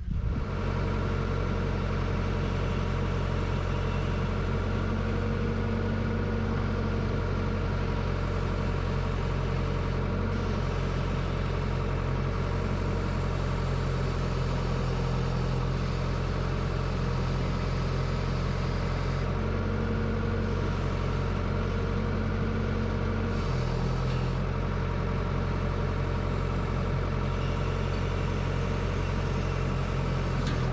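Red wheeled excavator's diesel engine running steadily, heard from the operator's cab, while its boom and bucket dig a pit in soil. The engine note shifts a little a few times as the hydraulics take load.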